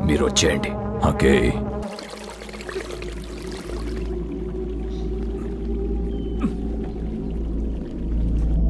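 Film soundtrack: a man's short angry line at the start, then a low, steady ambient drone with a faint haze above it, typical of an atmospheric film score.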